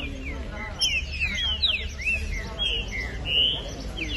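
Caged songbirds singing: a fast run of clear, whistled notes, many sliding down in pitch and some overlapping.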